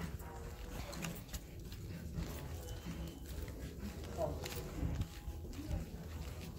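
Footsteps and camera handling on a hard tiled floor, irregular knocks and rustles, over a background of indistinct voices and a low hum.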